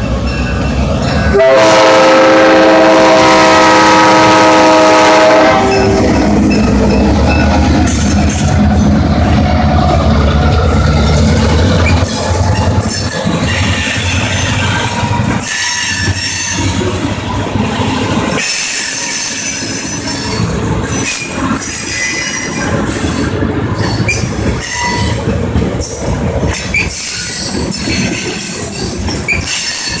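A train passing close by, led by EMD GP38-2 diesel locomotives with their 16-cylinder two-stroke engines. About a second and a half in, the locomotive's multi-chime air horn sounds one blast of about four seconds. Then the locomotives' engines rumble past, and the freight cars roll by with steel wheels squealing on the rails.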